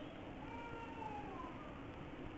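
A faint, drawn-out animal call in the background, rising and then falling gently in pitch over about a second, with a few fainter short tones around it.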